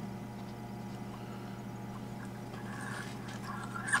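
Quiet room with a steady low electrical hum, and faint soft rustles near the end.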